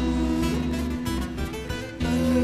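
Bağlama (long-necked Turkish saz) and acoustic guitar playing together in an instrumental passage between sung lines.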